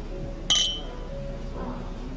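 Wine glasses clinking together once in a toast: a single sharp, bright chink with a brief high ring, about half a second in.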